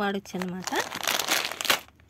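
Clear plastic packet of loose metal beads crinkling as it is handled, lasting about a second and stopping shortly before the end.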